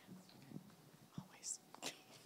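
Faint whispering between people close to the microphone, with a hissy 's'-like burst about one and a half seconds in and a few soft clicks.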